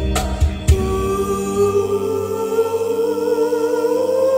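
Live band: a few hand-drum strikes in the first second, then a woman's voice holding a long wavering note over sustained chords.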